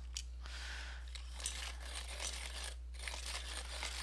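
Coloured pencil being turned in a hand sharpener, a quiet rough grinding and scraping with a brief pause about three seconds in. The pencil looks to have a broken core.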